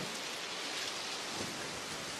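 Steady, even hiss of outdoor background noise, with no distinct event.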